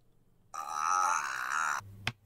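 A drawn-out vocal cry, about a second and a quarter long, wavering in pitch and cut off sharply. A low hum follows, with a click at the very end.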